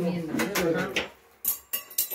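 Metal serving tongs clinking on a steel serving platter of grilled meat: two sharp clinks with a brief ringing in the second half, after a few spoken words.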